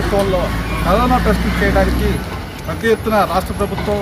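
A man talking over a bus engine idling, a low steady hum that stops about halfway through.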